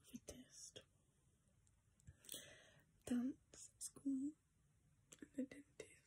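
Quiet whispering close to the microphone, in short breathy phrases with soft mouth clicks and a couple of brief voiced sounds in the middle.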